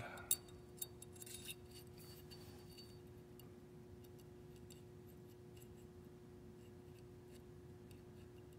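A few small metallic clicks in the first second and a half as a pistol's striker spring and guide rod are pushed into its slide, the sharpest click right at the start. Then only faint room tone with a steady low hum.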